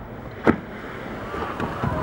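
Humpback whale's tail slapping the water: one sharp crack about half a second in, over steady wind and boat noise.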